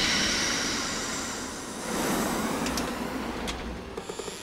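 Cartoon sound effect of a strong gust of wind rushing past, loudest at the start, fading, then swelling again about two seconds in before dying away.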